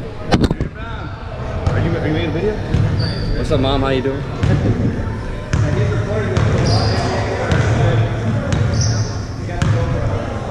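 A basketball bouncing on a hardwood gym floor at irregular intervals, under the overlapping voices of players calling to each other, all ringing in a large gymnasium hall. There is a sharp knock near the start.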